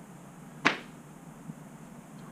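A single short, sharp slap about two-thirds of a second in, followed by a faint tick near the middle.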